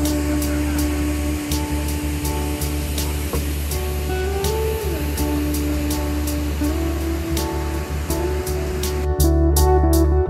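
Instrumental background music with held bass notes, a slowly gliding melody and a regular light percussion beat; it gets louder about nine seconds in.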